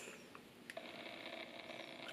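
Faint rubbing of a lip balm stick over the lips, with a couple of small mouth clicks, over quiet room tone.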